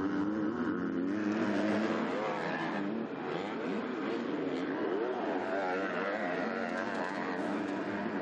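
Motocross bikes of the MX2 class, 250cc four-stroke engines, racing over a dirt track. The engine notes rise and fall repeatedly as the riders work the throttle and shift through turns and jumps.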